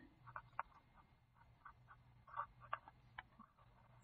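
Near silence with faint, scattered short scratches of a pen writing a word on a paper worksheet.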